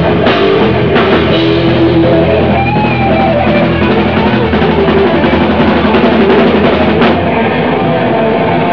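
Hardcore punk band playing live and loud: distorted electric guitars and bass over a pounding drum kit, with a cymbal crash about seven seconds in.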